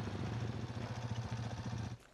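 A vehicle engine running steadily with a low hum, cutting off abruptly at the end.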